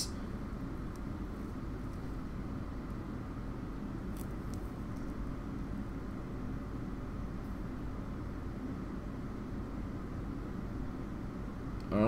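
A steady low hum or rumble of background noise, with a couple of faint ticks about four seconds in.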